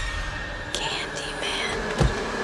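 Horror sound design: a low rumbling drone under a thin steady high tone, with a breathy whisper twice from about three-quarters of a second in.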